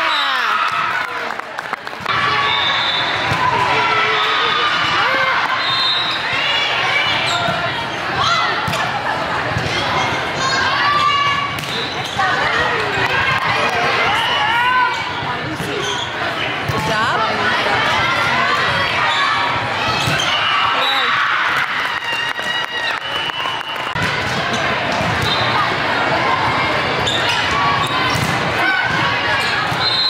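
Indoor volleyball game: many overlapping voices of players and spectators, with the thuds of the ball being hit and landing on the court.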